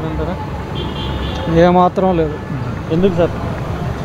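Street traffic with motorbikes and cars passing, a steady low rumble beneath a man's speech.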